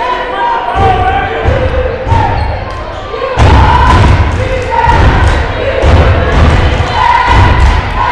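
A basketball being dribbled on a hardwood gym floor, repeated thuds that grow louder from about three seconds in. Crowd voices and shouts echo in the gym over it.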